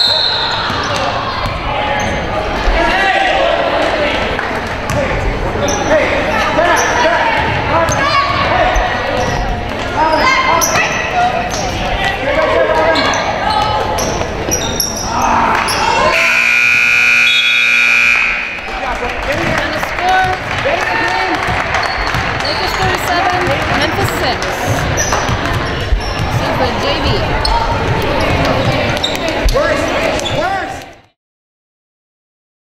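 Basketball game noise in a school gym: a ball dribbling, shoes on the court, and the voices of players, coaches and spectators. About halfway through, a scoreboard horn sounds steadily for about two seconds, marking the end of the game.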